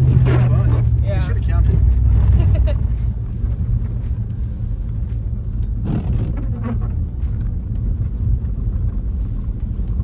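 Pickup truck's engine and tyres on a dirt road, a steady low rumble heard from inside the cab, with a voice over it for the first few seconds.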